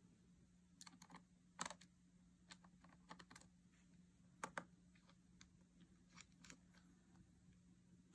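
Faint, scattered small clicks of a precision screwdriver turning a tiny screw into a MacBook Pro's logic board, a few clicks a second at most, with short pauses between them.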